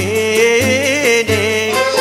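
Zajel song in the Constantine malouf style: a voice sings a long, ornamented line with wavering pitch over an instrumental ensemble, with a low bass note repeating about every two-thirds of a second.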